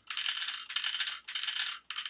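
Handmade pecking-chickens toy swung by its weighted string, the birds' beaks clattering against the paddle in quick bursts, about two or three a second.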